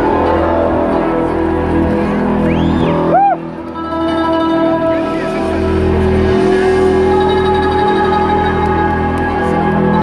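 Live rock band playing through a PA in a concert hall: held droning tones with electric guitar, a few curving pitch swoops about three seconds in, and a brief dip in loudness just after.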